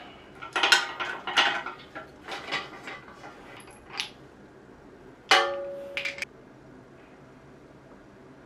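Steel headset press being unthreaded and taken apart after pressing in headset cups: irregular metallic clinks and rattles of the threaded rod and aluminium press cups. About five seconds in comes a loud metal clang that rings on for nearly a second, then the clinking stops.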